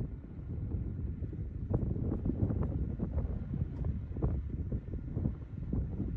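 Wind buffeting the microphone: an irregular low rumble with gusts swelling and dropping.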